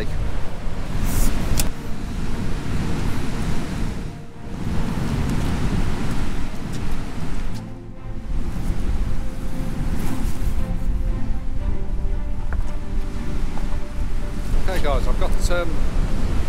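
Strong wind buffeting the microphone over the rush of rough surf breaking on a rocky shore, dipping briefly twice.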